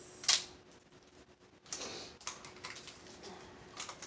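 Chocolate wrappers being unwrapped by hand: a sharp crackle about a third of a second in, then light crinkling and rustling with small clicks.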